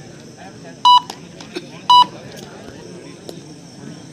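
Two short electronic beeps, about a second apart, over the steady chatter of a crowd.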